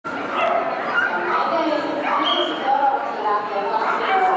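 A dog whining and yipping over people's chatter in the hall.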